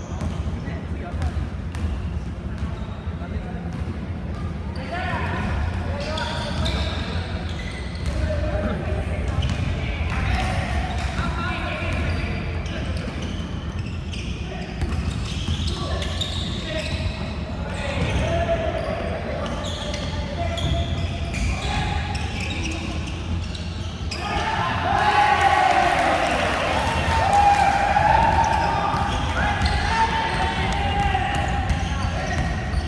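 Basketball game sounds on a hardwood gym floor: the ball bouncing as it is dribbled and passed, with players calling out to each other. The calls grow louder and more frequent near the end.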